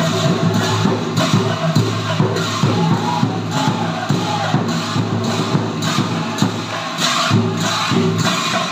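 Large brass bortal cymbals clashed in a steady rhythm by several players, under a group of voices singing an Assamese Nagara Naam devotional chant.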